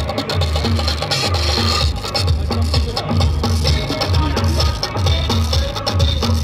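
Loud music with a heavy bass beat, about two pulses a second, played through a PA loudspeaker.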